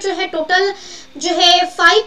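A woman's high-pitched voice speaking, with short pauses and one long drawn-out syllable in the second half.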